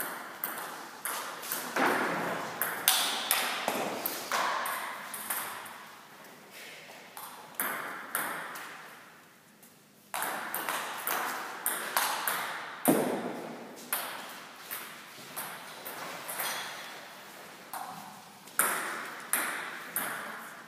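Table tennis ball struck back and forth in two rallies, a quick run of sharp clicks from the ball on the bats and the table, each ringing briefly in the hall. There is a short pause between the rallies about nine seconds in.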